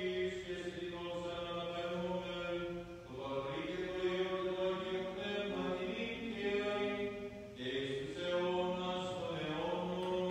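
Greek Orthodox liturgical chanting: voices singing a slow melody over a steady low held note, with short breaks in the phrase about three and seven and a half seconds in.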